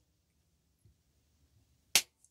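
Near silence, then a single sharp hand clap near the end.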